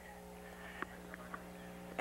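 A few light taps of tennis balls bounced up off racket strings, three faint pocks less than a second apart, over a steady low hum.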